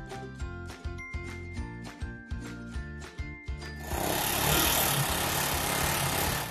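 Background music with a steady beat. About four seconds in, the noisy, steady running of a GY6 scooter engine takes over, now fed by a newly fitted 24 mm D-type diaphragm carburettor.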